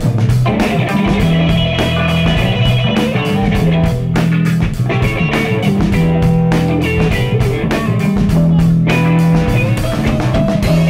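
Live instrumental blues-rock jam: electric guitars playing over a drum kit keeping a steady beat.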